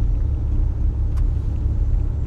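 Steady low rumble of road and engine noise inside a moving car's cabin, with a faint click about a second in.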